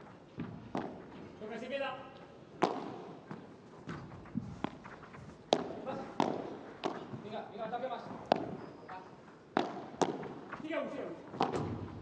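A padel rally: sharp hits of the ball off rackets, the glass walls and the court, roughly one every half second to second, in a large hall. Voices are heard between the hits.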